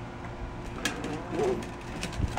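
A sharp plastic click as a toddler swings open the door of a Little Tikes Cozy Coupe ride-on car, followed by a brief soft wavering coo.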